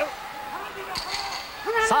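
A single sharp wooden knock about a second in, ringing briefly: the timekeeper's clappers giving the ten-second warning before the end of the round. Low arena background runs under it.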